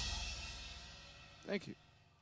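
The last chord of a piano, bass and drums rock band rings out and fades away after the final hit of a song, with the cymbals dying off. A brief voice sound comes about a second and a half in.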